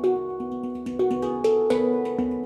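Yishama Pantam handpans played with the hands: a quick, rhythmic run of struck steel notes, each ringing on with steady overtones beneath the next stroke.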